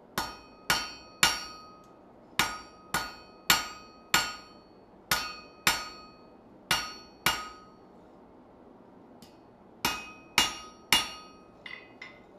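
Repeated sharp metal-on-metal strikes, each ringing briefly after the blow. They come in groups of two to four about half a second apart, with short pauses between the groups and a longer pause in the middle.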